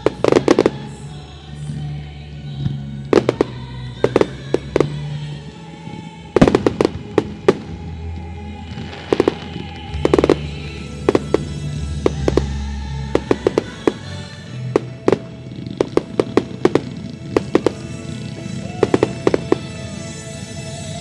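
Dominator fireworks going off in quick clusters of sharp bangs and reports, one cluster after another all through, over music playing underneath.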